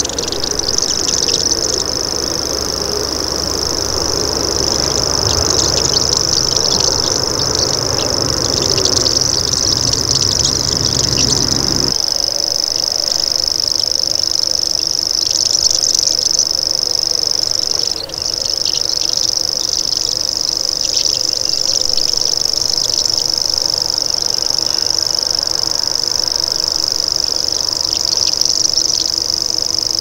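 Common grasshopper warbler (Locustella naevia) reeling: a continuous high-pitched, insect-like trill held without pause, broken only briefly about eighteen seconds in.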